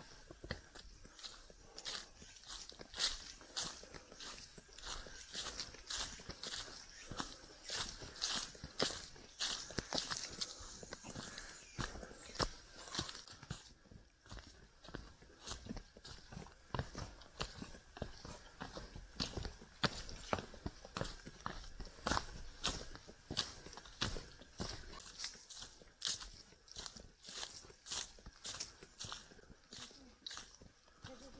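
Footsteps of hikers walking along a forest trail, shoes crunching on dry fallen leaves and loose stones at a steady walking pace.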